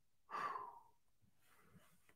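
A person's sigh: one breathy exhale about half a second long, a moment after the start.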